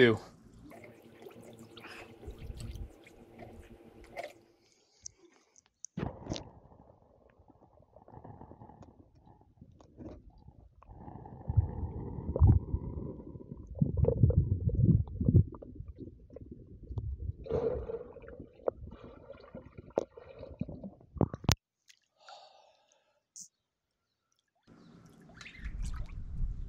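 Pool water sloshing and muffled underwater rumbling as a handheld radio is held submerged, in uneven stretches, with a sharp click about two-thirds of the way through.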